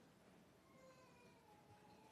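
Near silence: room tone, with a faint whine falling slightly in pitch for about a second near the middle.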